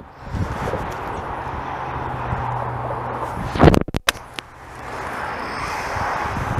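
A 9-iron striking a golf ball off an artificial-turf hitting mat: one sharp, loud crack a little over halfway through, followed by a couple of faint clicks. Steady wind noise on the microphone lies under it.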